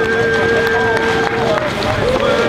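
Several voices in the crowd holding long calls at different pitches, one of them held steady for well over a second, overlapping with shorter rising and falling calls.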